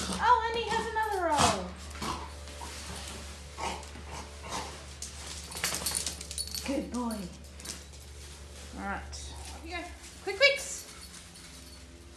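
Labrador retriever whining in several falling cries, one long one at the start and shorter ones later, with rustling and handling noises in between.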